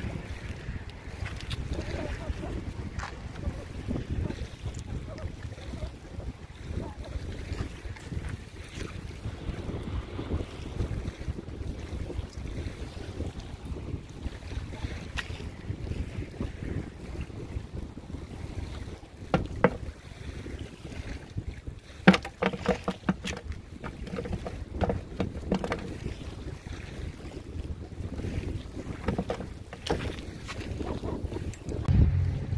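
Wind buffeting the microphone, a steady low rumble throughout. A few sharp clicks and knocks come about two-thirds of the way in.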